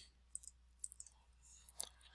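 A few faint, sharp computer mouse clicks over near silence, as edges are selected and a dimension is placed in CAD software.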